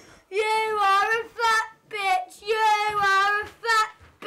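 A young girl singing loudly in a high, sing-song voice: about five held phrases with short breaks between them.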